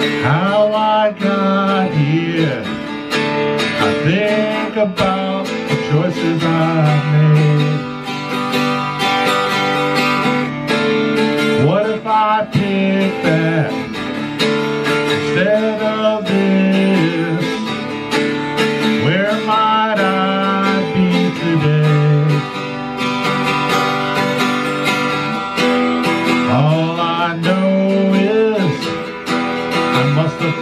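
Ovation 12-string acoustic-electric guitar strummed in chords, the instrumental opening of a song.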